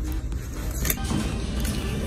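Clothes hangers being pushed along a store clothing rack, with one sharp hanger click about a second in, over a steady low rumble of handling noise on a handheld phone microphone.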